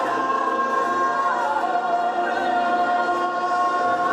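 Large choir singing a sustained chord, with one strong voice holding a long note above the massed voices; the top note drops a step about a second and a half in and is held on.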